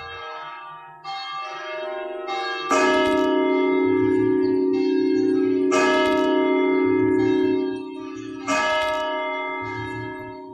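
Bells rung in slow, uneven strokes, the strongest about three, six and eight and a half seconds in. Each stroke rings on in a cluster of steady tones into the next.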